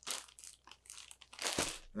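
Clear plastic polybag around a folded t-shirt crinkling as it is handled, in short irregular rustles, with a louder rustle near the end.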